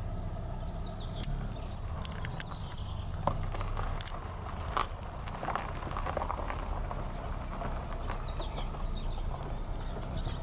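Outdoor ambience dominated by a steady low rumble of wind on the microphone, with a few faint high chirps near the start and end and two sharp clicks about three and five seconds in.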